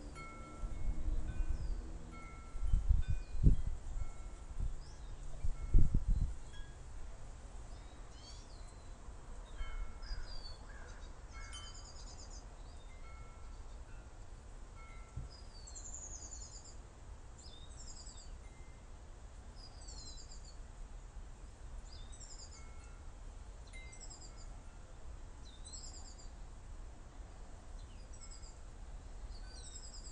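Birds calling in short high chirps, about one a second from midway on, with short clear tones recurring at two pitches, like chimes. A few loud low rumbling bumps come in the first six seconds.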